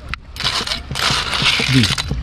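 A metal spoon scooping through a steel pot of siput sedut snails in gravy, with scraping, clinking of shells and sloshing of the gravy. A short voice comes in near the end.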